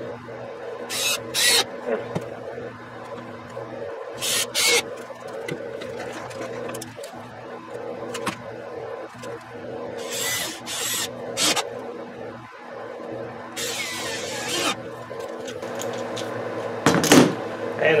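Cordless drill driving self-drilling Spax screws into a pine brace: a series of short whirring bursts, the longest about a second, near three-quarters of the way through. A steady low hum sits underneath.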